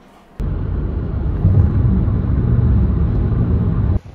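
Wind buffeting a phone microphone outdoors on a beach: a loud, steady, low rumble that starts suddenly about half a second in and cuts off at the end.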